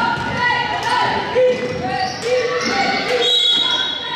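A basketball dribbled on a hardwood gym floor among shouting voices that echo in the hall, with a short steady high whistle blast near the end as play stops.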